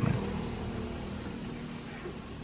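Quiet, steady background hiss of outdoor ambience, with no distinct sound event.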